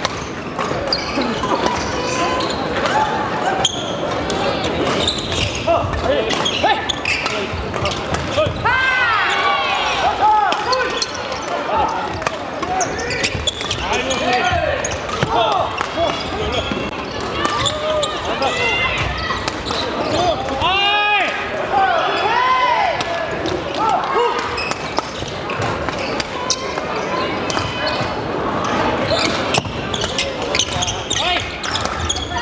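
Badminton rallies in a busy, echoing sports hall: court shoes squeaking on the wooden floor, with sharp racket strokes on shuttlecocks and a steady background of many voices. The squeaks come in clusters, thickest about nine and twenty-one seconds in.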